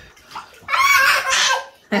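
Water sloshing in a bathtub, with a child's high-pitched squeal lasting about a second from near the middle, and a laugh at the very end.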